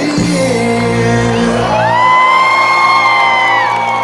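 Rock band playing live through a festival PA, heard from within the crowd at the close of a song. About two seconds in, a long high note slides up and is held before falling away shortly before the end.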